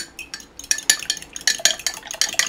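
A fork beating raw eggs in a glass jug, its tines clicking rapidly against the glass. A few scattered clicks come first, then quick steady beating, several strokes a second, from under a second in.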